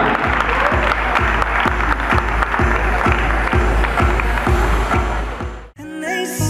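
Audience applauding over music with a steady beat of about two thumps a second. It all cuts off suddenly near the end.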